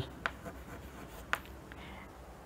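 Chalk writing on a chalkboard: two sharp taps about a second apart with faint scratching between and after.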